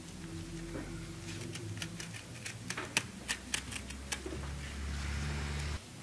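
Cardboard being handled and cut by hand: a quick run of sharp clicks and snips in the middle, then a soft rustle that stops suddenly. A low steady hum runs underneath.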